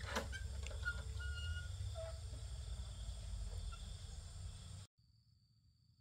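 Outdoor rural ambience: a steady low rumble, a sharp click at the start and a few short high chirps, then an abrupt cut about five seconds in to near silence with a faint steady high whine.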